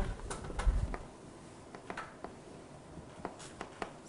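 Writing on a board: a dozen or so light, irregular taps and clicks, with a dull low thump about half a second in.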